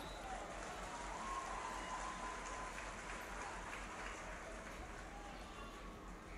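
Faint ambience from a hurling pitch: a low steady hiss with distant voices calling out.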